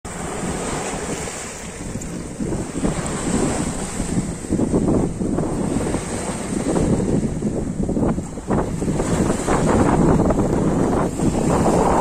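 Small sea waves washing in and breaking over low shoreline rocks in repeated irregular surges, with wind buffeting the microphone.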